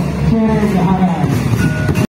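Singing with music, loud and continuous, the voices holding long, gliding melodic lines.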